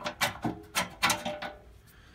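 Light metallic clicks and taps, about half a dozen in the first second and a half, from a flat metal tool knocking against a motorcycle fuel tank and frame as it is worked out of the gap between them.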